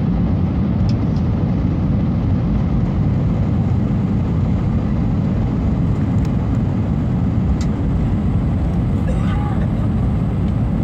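Steady rumble of an Airbus A319 passenger cabin in flight on descent: engine and airflow noise heard from a window seat over the wing, even and unchanging, with a few faint ticks and a faint brief voice near the end.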